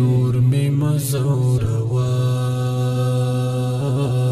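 A man singing a Pashto tarana over a steady low drone, first in short moving phrases, then holding one long note from about two seconds in to near the end.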